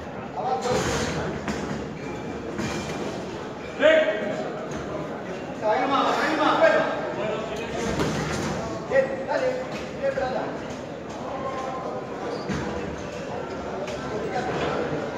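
Voices of spectators and cornermen calling out in a large, echoing hall, broken by a few sharp thuds of boxing gloves landing. The loudest thud comes about four seconds in, with others near six and nine seconds.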